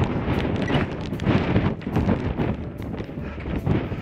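Strong wind buffeting the action camera's microphone, a loud uneven rumble rising and falling in gusts.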